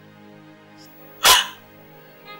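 Soft background music of held, sustained notes, broken about a second in by a single short, loud dog bark.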